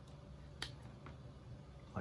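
A single sharp click about half a second in, as the Lightning plug of a charging cable is pushed into an iPhone 11 Pro Max's port, over a faint low hum.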